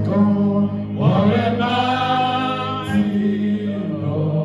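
Gospel worship singing: a few voices singing through microphones in long held phrases, over a steady low held note.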